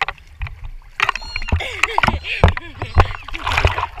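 Seawater splashing and sloshing against a camera held at the surface, with irregular knocks and rumbles as the water hits it.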